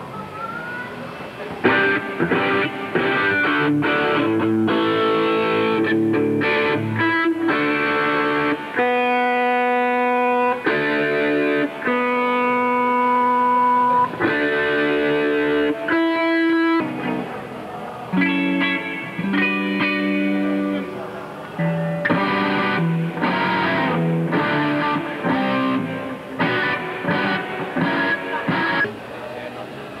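Electric guitar played solo, a slow melody of long held notes in phrases with short breaks between them, without drums.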